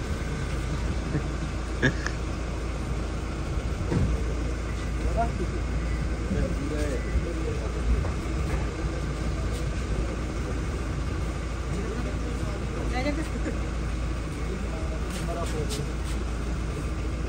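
Indistinct conversation among several people over a steady low rumble, with a few brief clicks.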